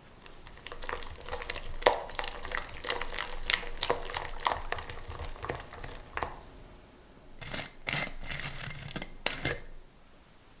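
A red silicone-coated whisk stirring butter cubes into thick lemon curd in a saucepan, a close run of wet stirring and scraping strokes against the pan. The stirring stops about six seconds in, and another short burst of sound comes near the end.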